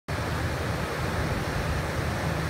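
Wind buffeting the microphone: a steady, uneven low rumble with a hiss above it.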